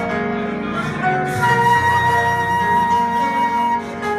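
Live band playing: a flute holds one long, steady note from about a second and a half in until just before the end, over low bass notes and keyboards.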